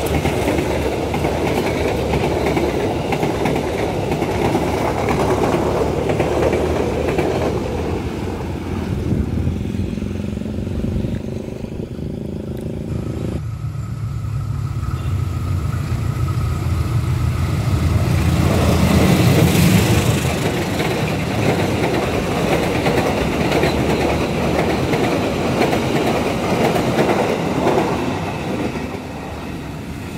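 Passenger train carriages rolling past close by, steel wheels running on the rails. After a sudden change about halfway through, a diesel-locomotive-hauled train is heard approaching and growing louder, at its loudest about two-thirds of the way in.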